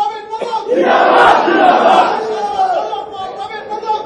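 A crowd of many voices shouting slogans together. It swells about a second in, eases off past the middle, and builds again near the end.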